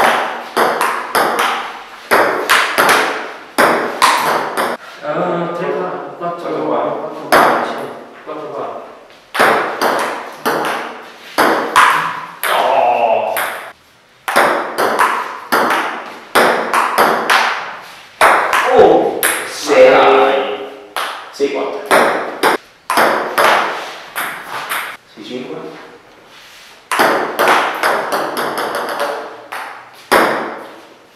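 Table tennis rallies: a plastic ping-pong ball clicking back and forth off rubber paddles and the table, about two to three hits a second, with brief pauses between points.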